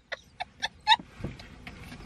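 Young women laughing hard: a few short bursts of laughter early on that trail off into quieter, breathy laughing.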